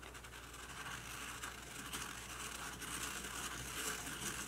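Faint scratching and scraping of a pen tip on paper as a plastic spirograph gear is turned around inside a plastic stencil ring, with small ticks from the gear teeth. It grows a little louder toward the end.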